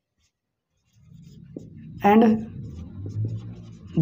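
Marker pen writing on a whiteboard: faint scratching strokes under a low background hum, starting about a second in after a moment of silence.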